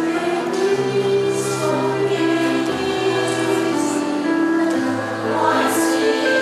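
Women's choir singing a Chinese choral song in parts, on held, sustained notes.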